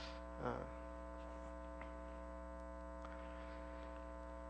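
Steady electrical mains hum, a low buzz with many evenly spaced overtones that hold unchanged.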